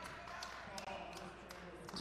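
Quiet gymnasium during a stoppage in play: a few sharp bounces of a basketball on the hardwood court over faint crowd chatter.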